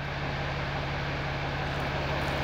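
6.7-litre Cummins turbo-diesel straight-six idling steadily just after starting, heard from inside the cab as an even low hum.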